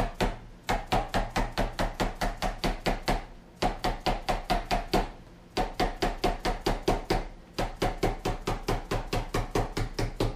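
Rapid mallet blows on a zinc sheet, folding it down over the edge of a wooden table-top substrate: about five strikes a second in runs of a few seconds with short pauses between, each blow leaving a short metallic ring.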